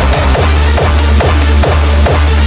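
Electronic dance music with a heavy bass beat, a little over two beats a second.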